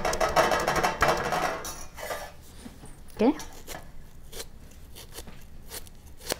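Knife chopping banana flower into small pieces: fast, even chopping for about the first two seconds, then a few separate knife taps.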